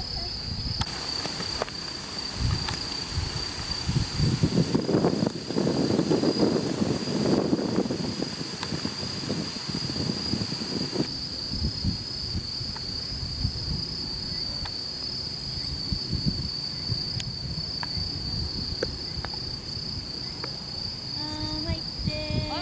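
Insects trilling steadily on one high pitch, unbroken throughout. A low rumbling noise rises for a few seconds near the start and fades, with a few faint ticks later on.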